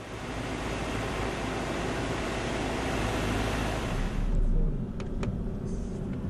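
Car driving, with a steady rushing road noise that changes about four seconds in to a lower rumble heard from inside the cabin, and two sharp clicks soon after.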